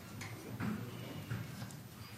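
Footsteps and shuffling of several people walking across a hard floor, a few irregular light knocks.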